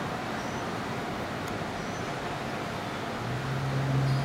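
Steady hum of city traffic heard from high up, with a low steady drone from a vehicle rising over it about three seconds in for about a second.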